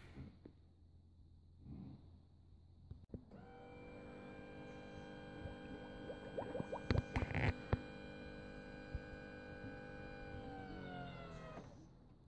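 Electric-hydraulic power trim pump of a Volvo Penta SP outdrive running with a steady whine as it raises the leg to the transport position. It starts about three seconds in, and its pitch sags slightly near the end as the leg reaches the top of its travel, just before it stops. A few short ticks come midway.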